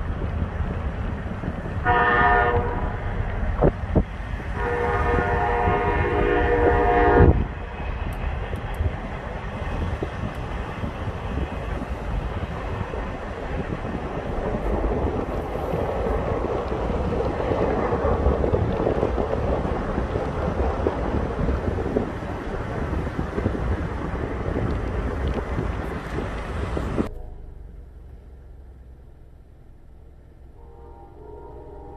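Freight train's diesel locomotive air horn sounding a short blast, then a long one of about three seconds, over a steady low rumble that drops away sharply a few seconds before the end.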